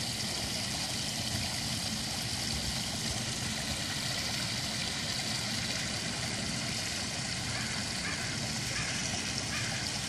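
Tiered fountain splashing steadily into its basin, an even hiss of falling water with a low rumble beneath.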